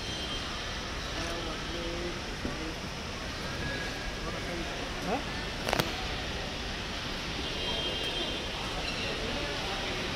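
Steady outdoor traffic noise with faint, indistinct voices in the background, and one sharp click a little over halfway through.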